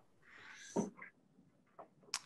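Faint, breathy laughter from a man, tailing off in a few short puffs.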